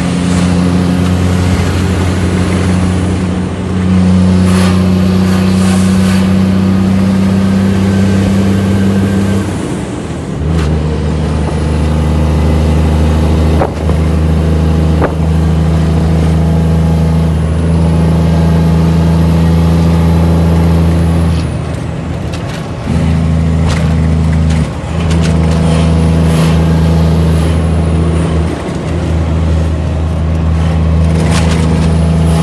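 Shacman F3000 truck's diesel engine heard from inside the cab while driving, pulling steadily with a faint high whistle above it. The engine note breaks off and dips briefly about ten seconds in, twice after about twenty-two seconds, and again near the end, like pauses for gear changes.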